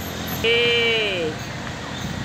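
One drawn-out, high-pitched vocal sound that falls in pitch, lasting under a second, over a faint steady low hum of background traffic.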